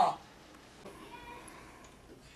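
The end of a boy's loud, drawn-out 'Ah!' cry, falling in pitch and stopping just after the start. Then low room sound.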